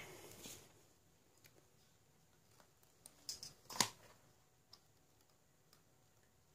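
Quiet handling of drawing tools: a few faint clicks and taps as a steel ruler is laid across the paper and a pen is picked up, the sharpest tap about four seconds in.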